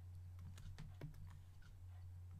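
Faint, scattered clicks and taps of a computer input device, such as a stylus or mouse, used to work drawing software. A steady low hum runs underneath.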